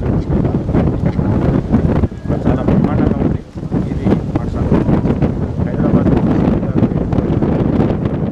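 Wind buffeting the microphone hard and unevenly, with a man's voice muffled underneath.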